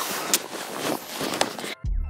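A noisy rush with a couple of faint clicks on a handheld camera microphone outdoors. Near the end it cuts off suddenly and background music with a beat starts.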